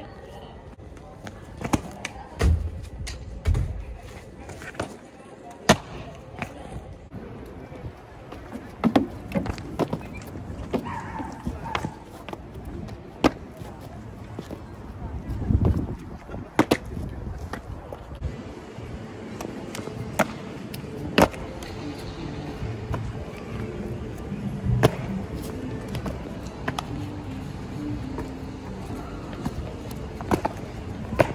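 Sneakers landing, pushing off and slapping on paving and ledges during parkour jumps and flips: many sharp, separate thuds scattered irregularly, some in quick pairs.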